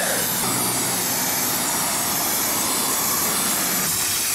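Aerosol can of white lithium grease spraying in one long, unbroken hiss, the nozzle held down steadily.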